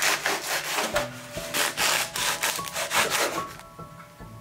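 Knife sawing through a crusty baguette on a wooden cutting board: a quick run of rasping back-and-forth strokes through the hard crust that stops shortly before the end.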